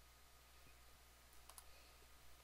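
Near silence with a few faint computer mouse clicks, a pair of them about one and a half seconds in.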